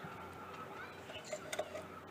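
A few light metal clicks from hand tools being handled, over a quiet background, about one and a half seconds in.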